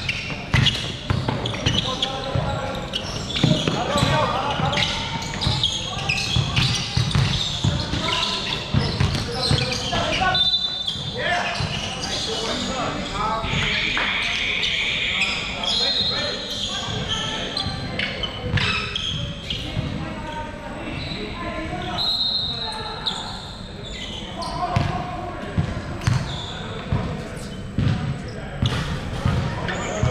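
A basketball bouncing on a hardwood court again and again in a large, echoing sports hall, with players' voices calling and a few short high squeaks.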